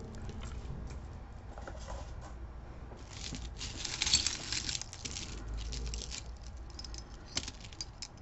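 Metal necklace chains and charms jingling and clinking as they are handled, with rustling. A louder burst of rustling and clinking comes about three seconds in.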